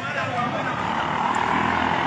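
A vehicle passing on the street, its noisy rush swelling in the second half, with men's voices over it.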